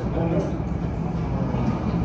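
Indistinct voices over a steady low rumble.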